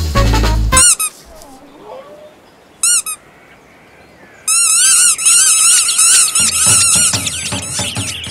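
Cartoon bird chirping in short, squeaky, warbling tweets: a single chirp after swing music cuts off about a second in, a quick pair about three seconds in, then a long run of rapid tweets from about halfway to the end.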